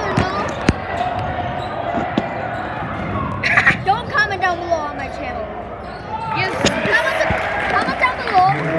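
Voices and chatter in a gymnasium, with a few sharp thuds of a basketball bouncing on the court floor at uneven intervals.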